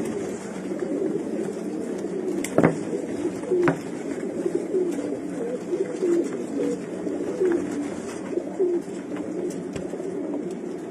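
Domestic pigeons cooing steadily, a run of short low coos rising and falling in pitch. Two sharp clicks stand out about two and a half and three and a half seconds in.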